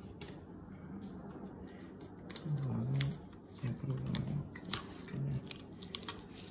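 Handling noise and scattered sharp plastic clicks from a bicycle handlebar phone holder being pressed and adjusted by hand. The loudest clicks come about halfway through and near the end.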